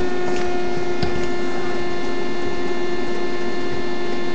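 A steady electrical hum with even overtones and hiss under it, with a couple of faint clicks in the first second.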